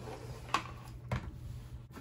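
Quiet handling noise: two brief light clicks about half a second apart over a faint steady low hum, as small model parts and the paper booklet are handled.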